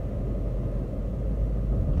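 Steady low rumble of a car heard from inside its cabin: engine and road noise while driving.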